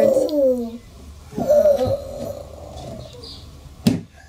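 An 11-month-old baby vocalizing: a high-pitched call falling in pitch at the start, then a held high note about a second and a half in. A single sharp knock comes just before the end.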